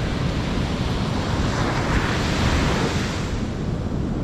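Ocean surf breaking and washing up a sand beach, with wind on the microphone adding a low rumble; the wash swells about two seconds in.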